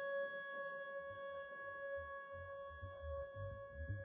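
Playback of a sampled ambient electric guitar: a sustained, ringing chord of steady high tones that comes in suddenly, with a soft low pulsing loop joining beneath it after about a second.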